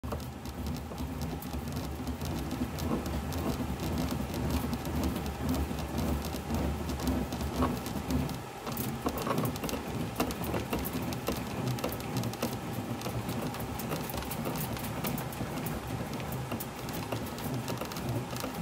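DeMarini composite baseball bat being turned by hand between the rollers of a bat rolling machine, giving a dense, even crackling like rain over a low steady hum. This is the crackle of the bat's composite barrel being broken in under roller pressure.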